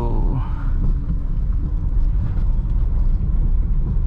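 Steady low rumble of a manual Honda car's engine and tyres heard inside the cabin, the car creeping slowly up a slight incline on half clutch with a little throttle.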